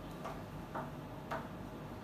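Cloth duster wiping a whiteboard: three short, faint rubbing strokes about half a second apart.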